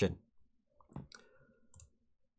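A few faint computer-mouse clicks: one sharper click about a second in, then fainter ticks near the end.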